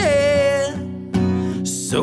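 A man singing with his own acoustic guitar: a held sung note drops in pitch and ends just under a second in, then a sharp guitar strum rings on under the next chord.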